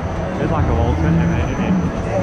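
Speed Buzz fairground ride spinning with a steady low rumble, and a voice talking loudly over it.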